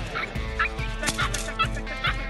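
Belgian Malinois puppy giving short, high-pitched yips and squeals over rock music with a steady beat.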